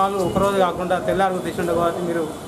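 A man speaking in Telugu, delivering a news report in a steady voice.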